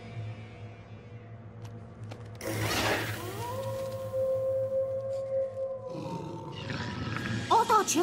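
Cartoon soundtrack: a sudden loud rough growl about two and a half seconds in, then a held suspenseful music note. Near the end comes a loud wavering, pitched cry, as timberwolves close in.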